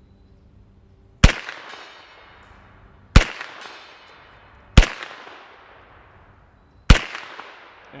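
Four single shots from a Sterling Mk.6 semi-automatic 9mm carbine, fired slowly about two seconds apart. Each is a sharp crack followed by a trailing echo.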